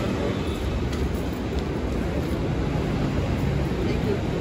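Steady low rumble of city street traffic, with a faint engine hum rising out of it about three seconds in.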